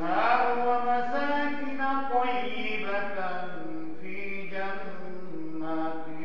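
A man's voice chanting a melodic Islamic prayer recitation, holding long notes that slide from pitch to pitch in drawn-out phrases.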